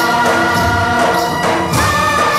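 Hindi film Holi song playing: held chorus voices over instrumental backing.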